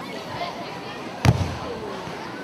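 A judo player thrown onto the judo mat, landing with one sharp, heavy thud a little past halfway.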